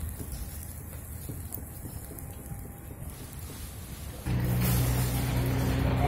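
Chicken satay sizzling and crackling over a charcoal grill. About four seconds in, a louder steady low hum cuts in abruptly.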